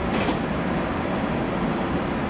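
JR Kyushu YC1 series hybrid diesel railcar starting away from a station, heard from inside behind the cab: a steady low rumble of the running railcar, with a brief higher hiss just after the start.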